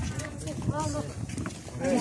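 People's voices, with a high voice whose pitch rises and falls in short drawn-out sounds, once near the middle and again near the end.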